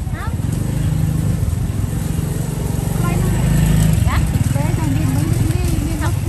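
A small engine running close by with an even, pulsing rumble, loudest a little past the middle and easing near the end, over scattered voices.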